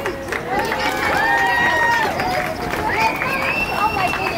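Several people's voices talking and calling out over each other, with some drawn-out high calls, too mixed together to make out words.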